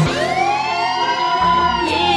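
Break in a DJ dance remix: the drum beat drops out and a siren-like tone glides slowly up and then back down over held low notes.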